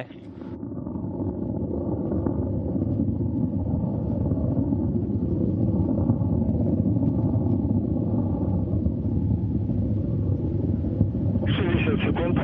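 Distant rumble of a Soyuz FG rocket's first-stage engines (four strap-on boosters plus the core) during ascent, heard from the ground. It is a steady low noise that swells over the first couple of seconds and then holds.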